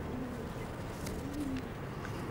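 Racing pigeons cooing: two short, soft, low coos, one just after the start and one a little past the middle, over a steady low background rumble.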